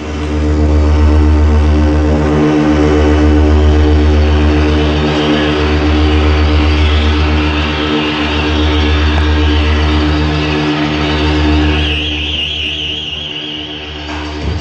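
Live industrial electronic music: a loud, droning synthesizer bass that restarts about every two and a half seconds under a steady buzzing chord and a hissy noise layer. A higher wavering tone comes in near the end.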